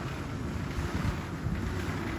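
Steady low rumble and hiss of supermarket background noise beside refrigerated display cases, with wind-like rumble on the phone's microphone as it is carried along.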